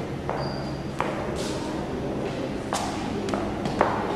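Reverberant indoor hall ambience: a low steady hum and faint murmur of voices, with scattered sharp clicks and knocks and a brief high beep about half a second in.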